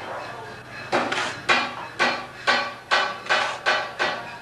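Repeated blows of a metal tool, about two a second starting about a second in, each a sharp strike with a brief ringing tone, as in building work on brick and mortar.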